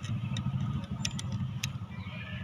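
A few sharp light clicks from a small screwdriver and a plastic mirror cover being handled, over a steady low hum.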